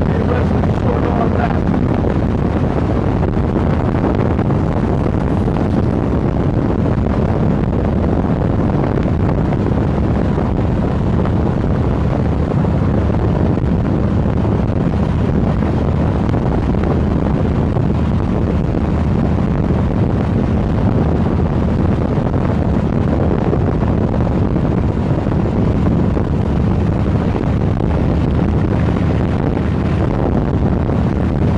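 Wind buffeting a handheld phone's microphone on a moving motorcycle, a loud, steady rush, with the motorcycle's engine running at a constant road speed underneath.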